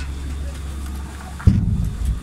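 Steady low rumble of chairlift station machinery as a bubble chair passes through. About one and a half seconds in there is a single loud low thump.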